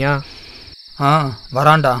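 Crickets chirring steadily in a high, even trill, with a voice shouting twice over them.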